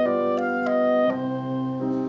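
Chamber ensemble of clarinet, French horn and piano playing a slow classical passage, the clarinet leading with held notes that change a few times, and a new chord coming in about a second in.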